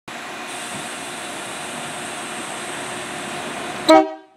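Irish Rail 22000 class diesel multiple unit with its engines running, a steady drone with a thin high whine. Near the end a short, loud blast of the train's horn.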